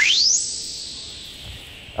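Synthesized logo sting: an electronic tone sweeping quickly up in pitch in the first half second, then a hissy whoosh fading away over the next second and a half.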